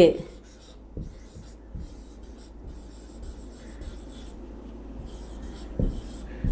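Marker pen writing on a whiteboard: a run of short, faint scratchy strokes with a few small taps as letters are formed, and a slightly louder knock near the end.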